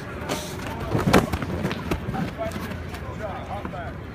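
Thumps and knocks of football players' pads and bodies as linemen drive out of their stances in a blocking drill, with the loudest cluster about a second in, over the chatter of many voices.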